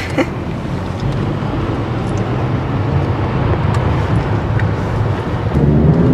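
Car engine and road noise heard from inside the cabin as the car pulls away, a steady low rumble that grows gradually louder.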